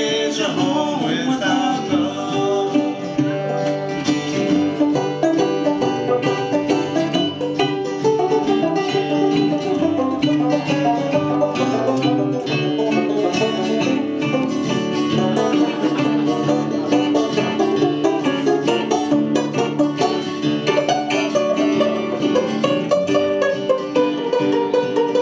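Instrumental break of an old-time string-band song: open-back banjo, acoustic guitar and a slide-played resonator guitar playing together at a steady tempo.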